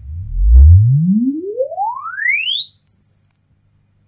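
Room EQ Wizard sine sweep played through a Wilson Alexia loudspeaker: a single loud tone gliding smoothly up from deep bass to very high treble in about three seconds, then cutting off suddenly. It is the test signal for measuring the speaker's in-room frequency response.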